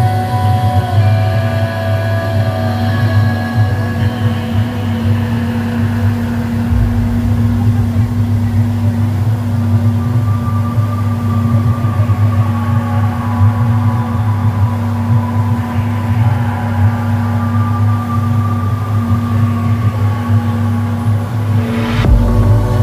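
Mercury outboard motor running steadily at speed, a continuous low drone, with background music laid over it.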